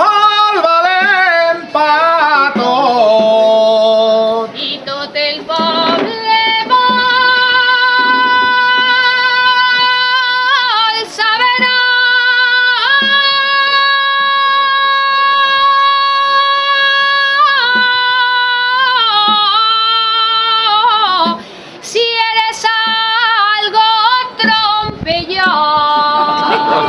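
A high voice singing an albà, the traditional Valencian night song, in long held notes with wavering ornaments. The longest note lasts about five seconds, with brief breaks for breath between phrases.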